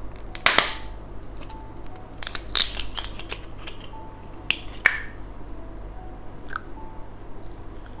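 A clear plastic candy capsule being opened and its plastic wrap peeled off a duck-shaped gummy candy: a handful of sharp plastic clicks and crinkles, the loudest about half a second in and around two to five seconds in.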